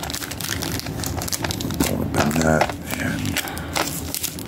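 Crinkling and rustling of a taped mailing envelope being handled and turned over in gloved hands, with irregular small crackles throughout.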